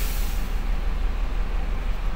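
Steady low rumble of an idling engine heard inside a bus cabin, with no distinct knocks or tones.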